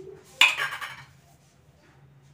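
Stainless steel kitchenware clattering once, about half a second in, with a brief metallic ring that dies away within half a second.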